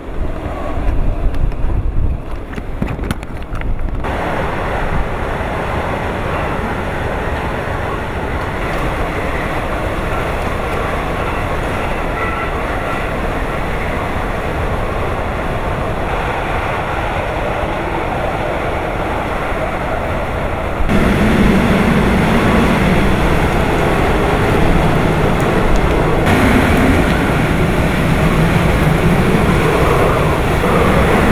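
Typhoon-strength wind and driving rain: a continuous rush of noise, with low rumbling wind buffeting on the microphone in the first few seconds. It turns suddenly louder and heavier about two-thirds of the way through.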